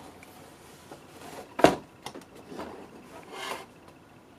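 Handling noise of a motherboard being lifted out of its cardboard box: a few short scrapes and rubs, with one sharp knock about one and a half seconds in.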